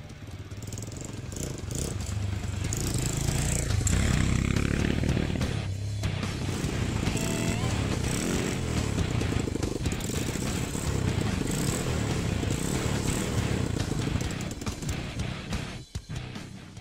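A Yuki Skyteam 200 single-cylinder motorcycle is ridden, running on the choke, with its engine note rising and falling as the throttle is worked. Background music plays over it, and there is a brief break about six seconds in.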